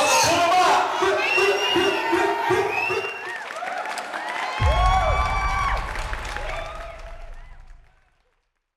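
Crowd cheering and voices trail off as a logo sting plays: sweeping, bending tones, then a sudden deep bass hit about four and a half seconds in that fades out by the end.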